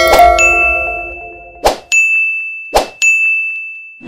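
Ding sound effects for an animated subscribe-and-bell graphic: a ringing ding just after the start, then two short swishes about a second apart, each followed by another ding. The last notes of the intro music fade out under the first ding.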